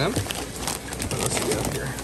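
Clear plastic fish-shipping bag full of water being handled over a tub: crinkling with many small scattered clicks.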